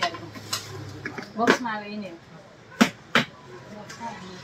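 Cardboard laptop shipping box being handled and opened on a glass counter: a few sharp, short cardboard knocks, two of them close together near the end.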